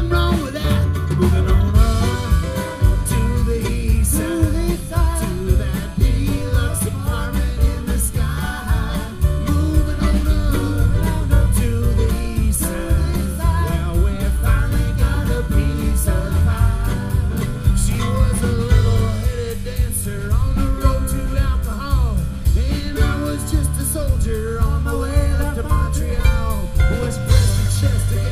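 A live acoustic string band playing a song: strummed acoustic guitar, mandolin and plucked upright bass, with singing at times.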